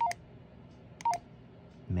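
Two keypad beeps from a Baofeng UV-5R handheld radio, about a second apart, each a short tone that steps down in pitch, with a light key click. They are the radio's confirmation beeps as menu number 26, the repeater offset setting, is keyed in.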